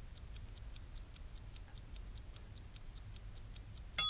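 Clock-ticking sound effect for a countdown timer, light even ticks at about four a second, ending in a bell ding as the timer reaches zero.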